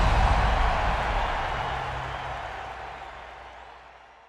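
Closing sound hit of the intro soundtrack under the logo: a loud noisy wash that fades away steadily over about four seconds.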